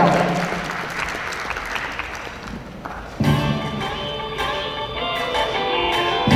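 Audience applause dying away over the first three seconds, then instrumental backing music starting abruptly about three seconds in, with a steady bass line.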